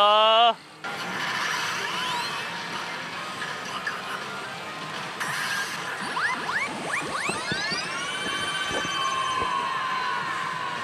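Saint Seiya Custom Edition pachislot machine playing its bonus-round music and effects: a run of rising electronic sweeps builds up and settles into held tones near the end, as the machine awards a game-count add-on.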